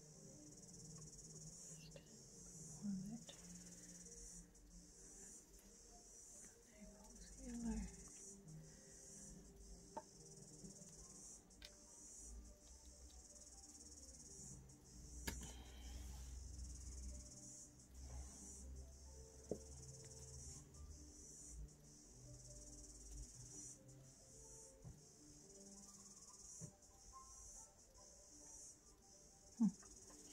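Faint, steady high-pitched chirring of insects that pulses with small regular breaks, over quiet tinkly music and an occasional soft click.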